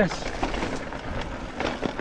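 Mountain bike rolling over a rocky trail: tyres crunching over loose stones and the bike rattling in quick, irregular clicks, over a steady low rumble.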